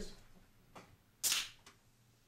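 A soda can being opened: a faint click of the pull tab, then a short hiss of escaping carbonation just past halfway.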